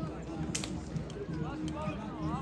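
Footballers' voices calling out across an outdoor pitch during play, with one sharp kick of the ball about half a second in.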